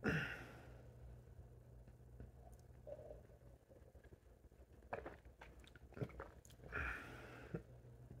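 A person's faint mouth and throat sounds while drinking orange juice: a breathy sound at the start, a few small clicks and smacks, and another breathy sound near the end, over a steady low hum.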